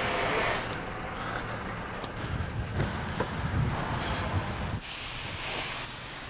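A low motor rumble with a few knocks, which cuts off about five seconds in and gives way to the quieter, steady hiss of a pressure washer spraying water.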